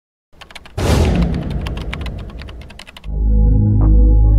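Logo-intro sound effects: a rapid run of sharp clicks like typing, with a loud whooshing hit about a second in, then a low sustained ambient synth chord begins at about three seconds.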